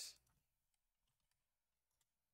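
Near silence with a few faint computer-keyboard clicks as a short word is typed.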